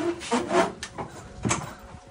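A portable Van Mark sheet-metal brake being worked as white trim stock is dropped in and the brake is set for a bend: metal clunks and scrapes, with one sharp metallic click about one and a half seconds in.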